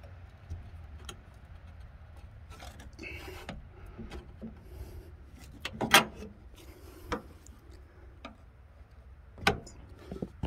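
Scattered clicks, light knocks and rubbing from metal hand work on a fryer's drain pipe, with the loudest knock about six seconds in and another near the end.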